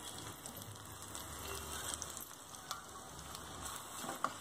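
Spices sizzling faintly in hot oil in a small kadai: a tempering of cumin, green paste, turmeric and red chilli powder frying. A few light clicks come through the sizzle.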